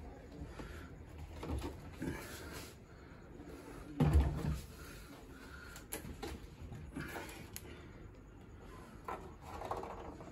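Handling noise as a large 1/7-scale ARRMA Infraction RC truck is lifted and turned over on a wooden table: soft rustling and a few light knocks and clicks, with one louder low bump about four seconds in.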